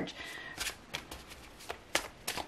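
A deck of tarot cards being shuffled by hand: a string of short, soft card flicks and slaps at an uneven pace, the sharpest about two seconds in.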